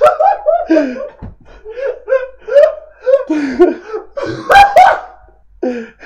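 Men laughing hard in quick repeated bursts, dying away briefly a little after five seconds in before a couple more bursts.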